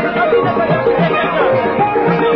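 Sindhi song: a male voice singing over tabla, with a steady drum beat of about two strokes a second and a sustained instrumental drone.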